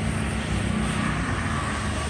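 A motor scooter passing on the street, its small engine running over a steady traffic rumble.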